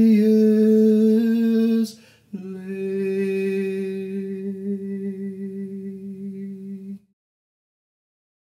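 A lone singing voice holds the song's closing notes: one long note, a quick breath about two seconds in, then a final long note that wavers slightly and fades out about a second before the end.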